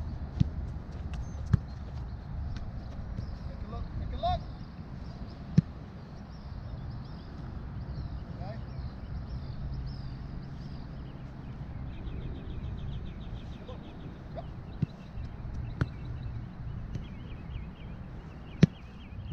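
A football kicked on artificial turf: several sharp knocks a few seconds apart, the loudest about five and a half seconds in, over a steady low rumble, with birds chirping faintly.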